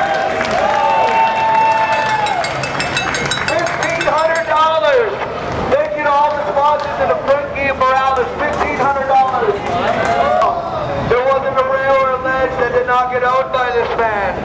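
A man's voice amplified through a handheld megaphone, calling out in long drawn-out shouts, with crowd noise behind.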